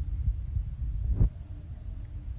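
A person gulping down a glass of juice close to the microphone: low, irregular swallowing thumps, with one sharper click a little over a second in.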